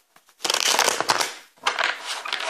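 A deck of tarot cards being shuffled by hand in two quick runs of about a second each, the first starting about half a second in.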